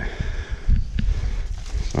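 Footsteps in grass and a low rumble on the microphone as the camera is carried, with one sharp click about a second in.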